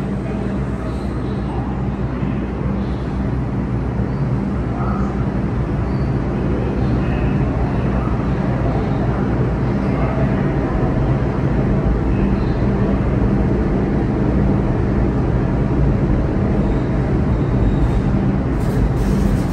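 An R142 subway train standing at the station platform: a steady hum with low droning tones over a rumble that grows slightly louder toward the end.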